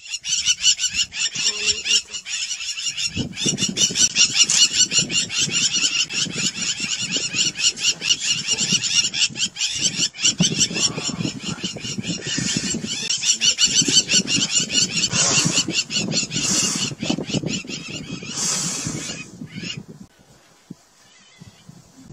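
A dense, continuous chatter of rapid high-pitched animal calls. Lower noise joins about three seconds in. The sound thins out and fades near the end.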